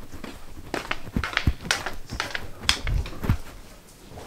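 Soft footsteps in slippers on carpet, with scattered small knocks and clicks and a few dull thumps.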